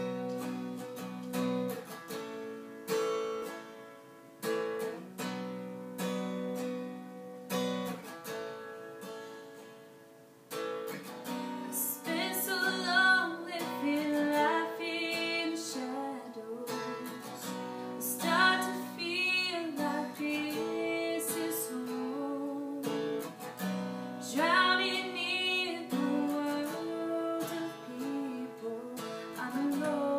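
Acoustic guitar playing slow chords that ring and fade, joined from about ten seconds in by steadier playing and a woman's singing voice, a live acoustic song performance.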